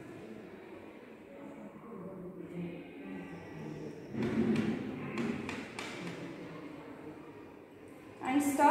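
Glass stirring rod working in a small glass beaker as starch powder is stirred into hot water to make starch paste, with a cluster of light knocks and taps of the rod against the glass about halfway through, over faint room noise.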